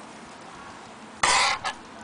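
A single short cough a little past a second in, followed by a faint click.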